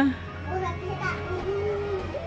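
A young child's high voice, chattering in a sing-song way and holding one long note near the end, over a steady low hum.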